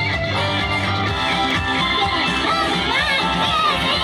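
Live pop-rock music with two electric guitars played through small amplifiers, continuous and loud.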